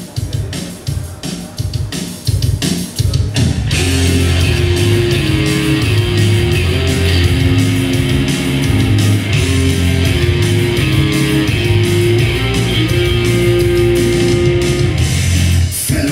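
Punk rock song played from a vinyl record on a turntable. It opens with a few seconds of drum hits alone, then guitars and bass come in about three and a half seconds in and the full band plays loud and steady.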